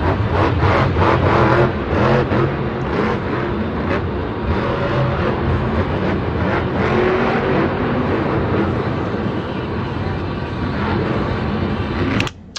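Grave Digger monster truck's supercharged V8 engine running loud and hard as the truck drives the dirt track and launches off a ramp, heard from the stadium stands.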